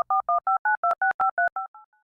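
Telephone keypad touch tones (DTMF) dialing a number: a quick run of about a dozen short two-note beeps, several a second, the last few fading out.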